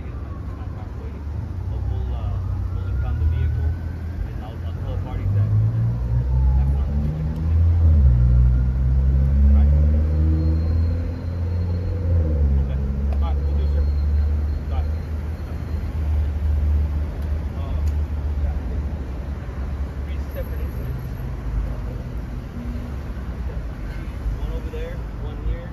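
A motor vehicle engine running close by over a low traffic rumble. Through the middle its pitch rises and then falls, as it revs or drives past.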